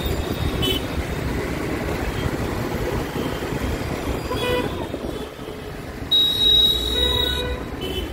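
Busy road traffic running steadily, with vehicle horns honking: a short honk about four and a half seconds in, then a longer, louder one about six seconds in that lasts around a second and a half.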